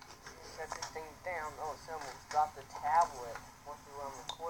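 Speech playing back from a phone's small speaker: a quieter, higher-pitched voice in short phrases, thin and distant next to a voice in the room.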